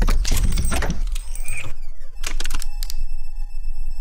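Sound design for an animated logo intro: a deep boom, then a rapid run of metallic clicks and clanks as the logo pieces lock together. About two and a half seconds in, a bright ringing tone starts and holds.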